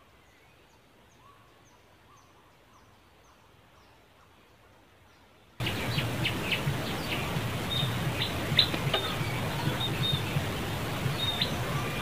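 Faint outdoor background with small repeated bird chirps, then about five and a half seconds in the sound jumps suddenly to a loud steady hiss of outdoor noise scattered with many short, high chirps and clicks.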